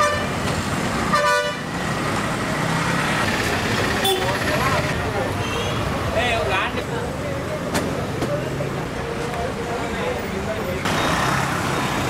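Busy street ambience: a crowd of people talking over traffic noise, with a vehicle horn tooting briefly about a second in.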